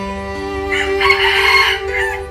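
A rooster crows once, a call of about a second, starting partway in, over background violin music.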